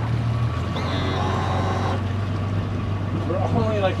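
Yamaha 200 outboard motor running at low speed as the boat is manoeuvred, a steady low hum whose note drops slightly about half a second in.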